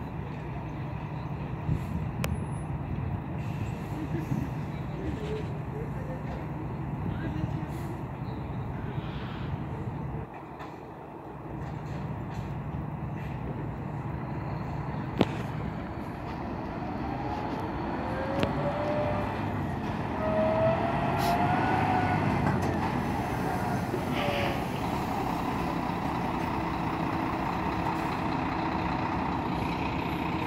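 Tour bus engine running close by with a steady low hum as the bus moves into a parking spot. It grows louder for a few seconds past the middle, with a pitch that rises and falls.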